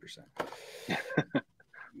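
Men chuckling in a few short, breathy bursts over a video-call audio link.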